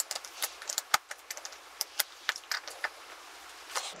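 Tightening the forward-lean adjustment screw on a snowboard binding's highback with a tool: a run of small, irregular clicks and ticks, the loudest about a second in.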